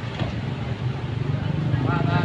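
A vehicle engine running at low speed, a steady low rumble, with people's voices faintly heard over it.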